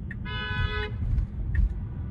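A single short car horn honk with a steady pitch, lasting about two-thirds of a second, heard from inside a moving car's cabin over low road rumble.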